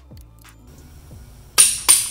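Background music with steady low tones. Near the end come two sharp metallic clicks close together from a click-type torque wrench reaching its 40 ft-lb setting on a main bearing cap bolt.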